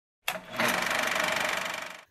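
Channel logo intro sound effect: a short hit, then a fast, steady rattling buzz that fades away near the end.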